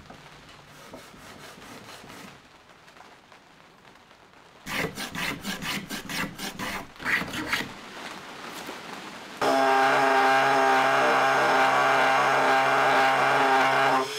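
A block plane taking a series of quick strokes along the edges of an oak box, trimming the overhanging sides flush. About nine and a half seconds in, a power sander with its dust-extraction vacuum starts up and runs steadily, the loudest sound here.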